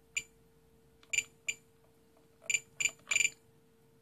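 Spektrum DX8 radio transmitter giving short electronic beeps as its roller is scrolled to step through channels in the mix menu, about eight quick pips in uneven groups.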